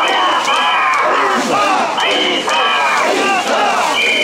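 A crowd of mikoshi bearers shouting the rhythmic "wasshoi, wasshoi" chant in unison as they carry a portable shrine. A high steady whistle sounds in short double blasts about every two seconds over the chant.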